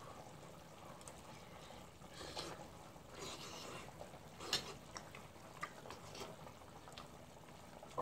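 Faint eating sounds: a spoon scooping and lightly clicking in a bowl of hot broth, with a few soft slurps and breaths.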